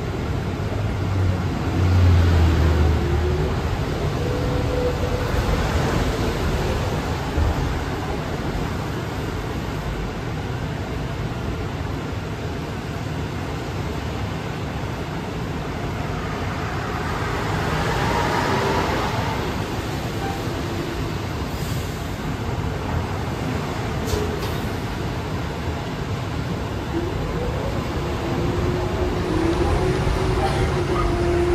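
Inside the cabin of a 2006 New Flyer electric trolleybus in service: steady road and rolling noise, with faint motor whine that rises and falls in pitch. A heavier low rumble comes in about two seconds in, and the noise swells again a little past the middle.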